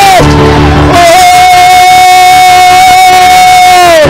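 A congregation in loud spontaneous praise with music: shouting and singing voices, with one long high held cry starting about a second in that slides down in pitch at its end.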